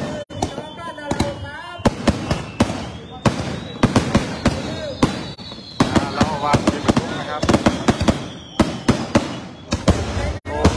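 Rapid, irregular sharp cracks and bangs of firecrackers going off, with people talking in between. A faint high whistle slowly falls in pitch through the middle.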